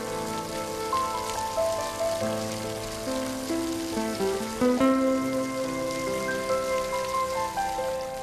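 Background instrumental music of slow, held melodic notes that shift in pitch, over a steady hiss like rain.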